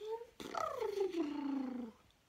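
A woman's playful, wordless voice: a rising pitch slide ending just after the start, then a long slide falling steadily in pitch over more than a second, made while lifting a baby up high and lowering him in play.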